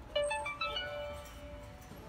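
A Fisher-Price Linkimals electronic toy playing a short tune through its small speaker: a quick run of notes, then one note held for over a second.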